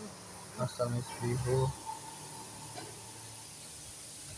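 A person's voice, a few quiet words or murmurs about half a second to two seconds in, over a faint steady high-pitched background hiss.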